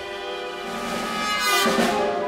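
Contemporary orchestral music with sustained string tones. It swells into a loud, noisy burst a little past the middle, which fades just before the end.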